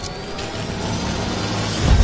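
Cinematic logo-sting sound effects: a noisy whoosh with a slowly rising tone building up, then a deep boom hitting just before the end.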